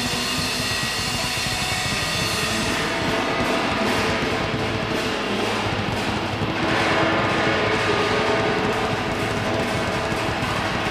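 Live rock band playing: electric guitars and drums in a dense, steady passage without singing.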